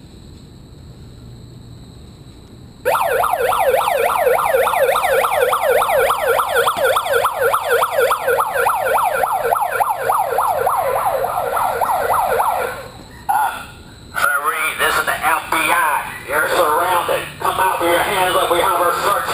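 A handheld megaphone's built-in siren sounding a rapid, repeating whoop-whoop yelp for about ten seconds, starting about three seconds in. After a brief break, loud, choppy, distorted sound comes through the megaphone near the end.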